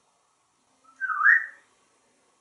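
African grey parrot giving one short whistle of about half a second, about a second in, which dips and then rises in pitch.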